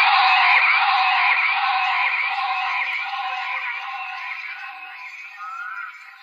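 Closing of a dark psytrance track: a dense, high-pitched, chattering electronic texture that fades out steadily, with a short rising tone near the end.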